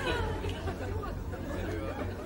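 Indistinct voices chattering over a steady low hum.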